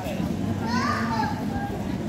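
Voices of people and children talking, with a child's high voice rising and falling briefly about a second in.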